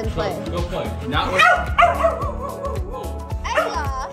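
Background music with a steady beat and a sung vocal, with a dog barking over it.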